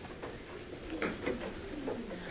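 Faint sounds of people sitting back down in a meeting room: chairs creaking and shuffling, with a small click about a second in.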